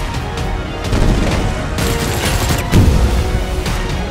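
Action film score mixed with rapid gunfire, and a heavy low boom about three seconds in.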